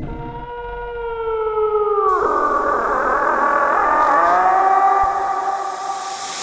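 Eerie horror sound effect: a wailing, siren-like tone slides slowly downward for about two seconds, then gives way to a hissing drone with a tone rising from about four seconds in.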